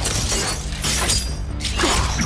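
Action-film battle sound effects: something shattering and breaking, with another sudden hit near the end, over the film's music score with steady low held notes.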